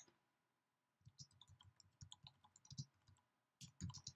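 Faint, irregular keystrokes on a computer keyboard, starting about a second in, as a short phrase is typed.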